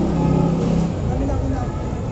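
Indistinct voices over a steady low rumble. A held low hum fades out about a second in.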